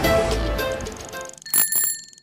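Music fading out, then a bicycle bell ringing twice near the end, its high ring trailing away.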